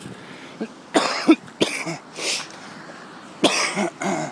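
A man coughing: a cluster of harsh coughs about a second in, then another cough near the end.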